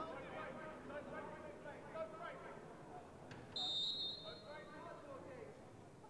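A referee's whistle blown once, a short shrill blast a little past halfway, signalling that the free kick can be taken. Players' shouts and scattered crowd voices run underneath.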